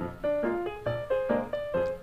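Background piano music: a melody of short single notes, a few to the second.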